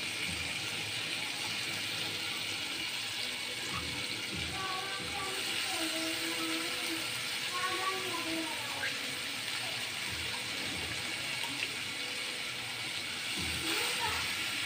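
Chopped spring onion greens sizzling steadily in a kadai of hot spiced oil, an even hiss without strokes or clatter.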